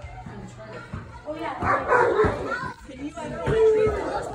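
Children calling out as they play, with a dog barking.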